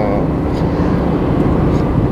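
Steady low rumble of a moving car's road and engine noise, heard from inside the cabin.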